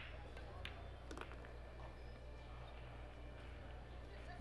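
A pool shot played: faint sharp clicks of the cue tip on the cue ball and of ball striking ball, two or three in the first second or so, over a steady low hum.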